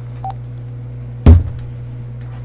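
Steady low hum with one loud, short thump a little over a second in.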